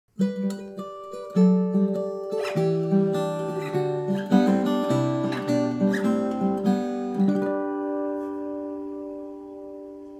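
Fingerpicked acoustic guitar phrase: a quick run of plucked melody notes over a moving bass line, ending about seven seconds in on a chord that is left to ring and slowly die away.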